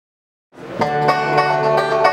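Acoustic bluegrass band playing, led by banjo with acoustic guitar, mandolin and upright bass; the music comes in from silence about half a second in and quickly reaches full level.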